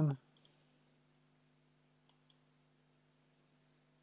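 Computer mouse button clicks: a couple of light clicks about half a second in, then two quick clicks about two seconds in, over a faint steady electrical hum.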